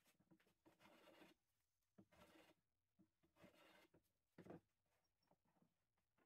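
Very faint hand plane strokes shaving the edge of a board held in a pipe-clamp vise: short scraping passes about once a second, the strongest a little after the middle.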